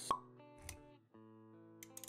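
Sound effects and music of an animated intro: a sharp pop just after the start, a short low thump around the middle, then a brief gap and held music notes from just past a second in.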